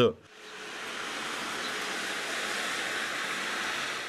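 Steady, even hiss of outdoor street ambience recorded in falling snow, fading in about half a second in, with no distinct events.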